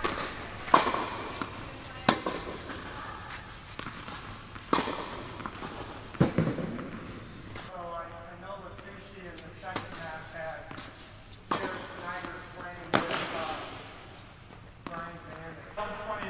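Tennis ball struck by rackets and bouncing on an indoor hard court during a rally, several sharp hits spaced a second or more apart, each echoing in the large hall.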